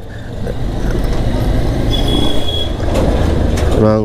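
Steady low rumble of road traffic and a moving vehicle, as heard from a motorcycle riding through traffic. A brief high-pitched tone sounds about two seconds in.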